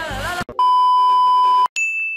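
A song with singing cuts off abruptly, then a loud, steady electronic beep sounds for about a second, followed straight after by a shorter, higher-pitched beep.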